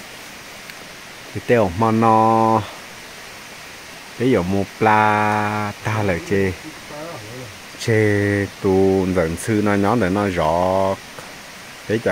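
A man's voice speaking in short phrases, with a steady background hiss between them.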